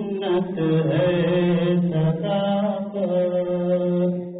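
A man's voice chanting Urdu Sufi devotional verse (kalam) in long held notes that step up and down in pitch.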